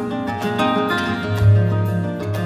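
Flamenco guitar music, quick plucked notes over a low bass note that swells about one and a half seconds in.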